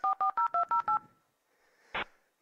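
Touch-tone (DTMF) dialing at machine speed, as a dial-up modem dials out: a rapid run of about eight short two-note beeps within the first second, then a single short blip near the end.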